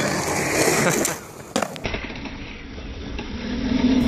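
Skateboard wheels rolling on concrete, with a couple of sharp clacks of the board hitting the ground about a second and a half in.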